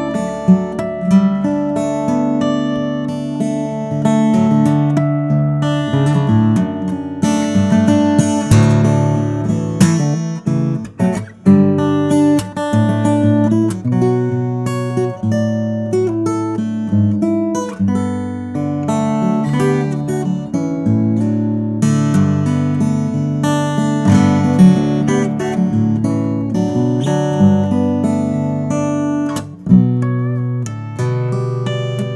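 Cort LUCE-LE BW steel-string acoustic guitar played solo, a picked melody mixed with strummed chords and sharp percussive accents. The tone is very bright and lively.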